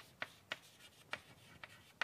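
Chalk writing on a blackboard: about five short, sharp taps at irregular intervals as the chalk strikes the board, with faint scraping between them.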